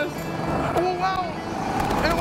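Go-kart engine running steadily on the track, with a short vocal sound from the driver over it.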